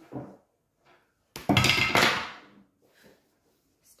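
A candelabra knocked over: a sudden loud clatter about a second and a half in, ringing on for about a second as it dies away.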